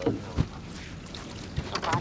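Gill net being hauled over the side of a wooden boat, water dripping and splashing off it, with a sharp knock on the hull about half a second in and a softer one near the end.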